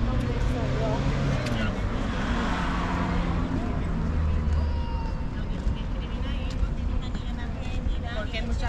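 Street ambience beside a wide road: a steady rumble of traffic, with a vehicle passing a couple of seconds in, and passers-by talking.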